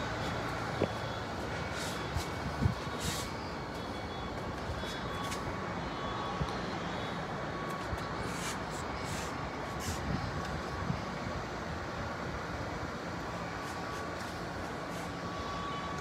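Steady hum of city traffic heard from high above street level, with a few faint scattered clicks.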